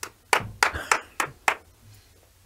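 Six hand claps, evenly spaced at about three a second.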